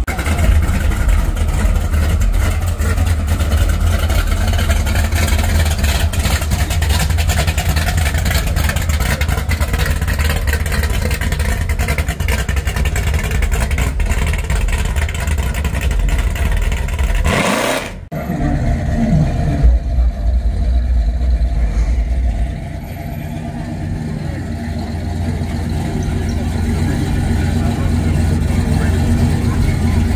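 Custom classic cars on big wheels rolling slowly by with their engines running, under a heavy low rumble and indistinct voices. The sound cuts out briefly a little past halfway.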